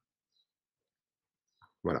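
Near silence, then near the end a man's voice briefly says "voilà".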